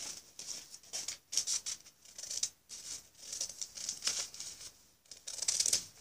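Scissors cutting a sheet of paper: a string of short, crisp snips with brief pauses between them.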